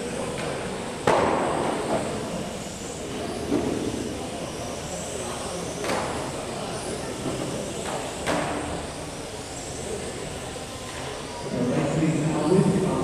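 1/12-scale electric on-road RC racing cars running, with a faint high-pitched whine that rises and falls. Sharp knocks come about a second in, near six seconds and near eight seconds, the first the loudest.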